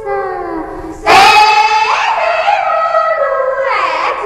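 High female voices singing a folk-style call with long sliding notes. A loud, held note comes in about a second in, followed by further sung glides.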